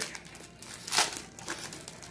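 Foil trading-card pack wrapper crinkling as the opened pack and its cards are handled, with one sharper, louder crackle about a second in.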